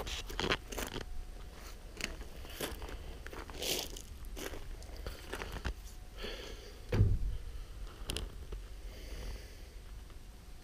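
Scattered light crunches and clicks of footsteps on dry leaves and gravel, with one heavier thump about seven seconds in.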